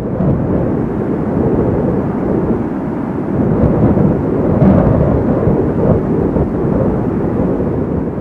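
A low, continuous rumble, steady with small swells.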